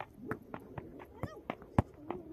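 A football being juggled on the feet: a quick run of dull thuds as foot meets ball, about six in two seconds, the loudest near the end.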